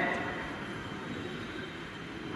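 Faint, steady background noise of an open-air public address setting between sentences of a speech. The last word's echo through the loudspeakers fades away in the first half second.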